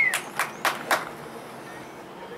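Four sharp hand claps in quick succession, about four a second, then the open-air background of the field.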